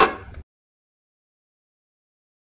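A single sharp knock right at the start, then the sound cuts off to dead silence for the rest.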